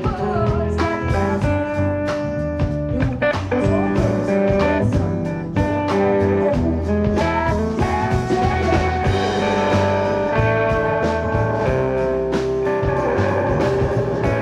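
Live band playing an instrumental passage: an electric guitar plays a melodic line over a drum kit and an upright double bass, with steady drum hits throughout.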